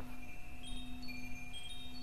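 Chimes ringing: several clear high tones sound one after another and hang on, over a steady low hum.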